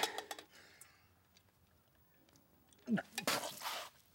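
A few light clinks and clicks of a tin mug being handled at the start, then a wounded man's short voiced gasp and heavy breath near the end.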